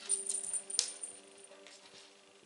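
A small bell in a cat toy jingling in a few quick shakes through the first second and a half, loudest just under a second in, over soft background music.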